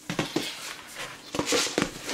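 A cardboard oats canister being handled and opened: a series of light knocks and clicks from the canister and its lid, with a short rustle near the end.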